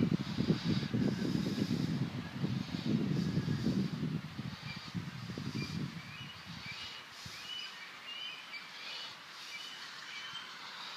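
Birds chirping outdoors in short, repeated high calls, over an irregular low rumble that fades out about six seconds in.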